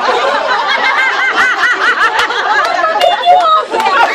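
Several people laughing and talking over one another, with one high-pitched laugh going in quick repeated pulses through the middle.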